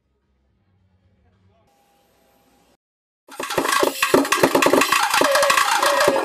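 Near silence for about three seconds, then a rock band playing loudly on stage: a drum kit with bass and electric guitars, starting abruptly.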